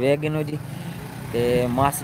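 Men's voices talking, over a steady low engine hum.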